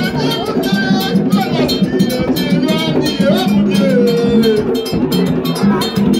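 Live drum music: hand drums keep a steady, driving beat, with voices over it.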